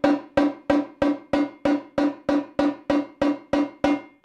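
Yamaha marching tenor drum struck with evenly spaced legato strokes at about nine inches of stick height, about three strokes a second. Every stroke rings at the same pitch and dies away before the next.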